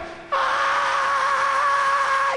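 A male singer holding one long, high, wailing note into a microphone, starting about a third of a second in and staying steady in pitch.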